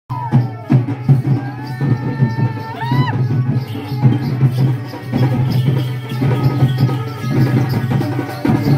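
Raut Nacha procession music: loud, busy folk drumming and rattling percussion over a steady low drone. A high melody line slides up and down in pitch during the first three seconds.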